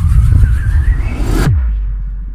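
Electronic intro stinger: a loud, bass-heavy rising noise that cuts off suddenly about one and a half seconds in with a quick downward pitch sweep, leaving a low hum that fades away.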